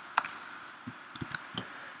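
A few keystrokes on a computer keyboard: one sharp click just after the start, then several fainter, sparse clicks in the second half.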